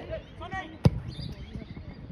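A single sharp thud of a soccer ball being kicked hard, a little under a second in, with players' shouting around it.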